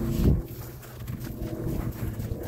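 A low thump about a quarter second in, then footsteps in snow over the faint low rumble of an airplane passing overhead.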